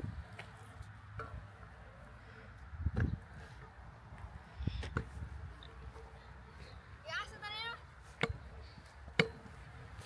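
Low, uneven rumble of wind on the microphone. A few sharp clicks cut through it, and a brief wavering voice calls out about seven seconds in.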